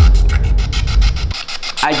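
Spirit box sweeping radio stations: a sudden, loud, choppy burst of static with a deep rumble under it, lasting about a second and a half before cutting off.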